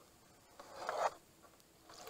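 One swish of river water close against the kayak, rising for about half a second and then cutting off, as the boat moves down the fast flood-high river.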